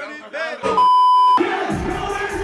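A man's voice briefly, then a single steady electronic beep lasting about half a second and cutting off suddenly, then music with a beat starts and runs on.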